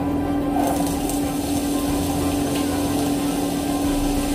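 Chopped onions scraped off a plate with a wooden spatula into hot oil in a frying pan, sizzling from about half a second in and frying steadily.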